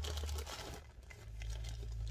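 Clear plastic bag crinkling and tearing as it is pulled open by hand, in irregular rustles with a brief lull about a second in.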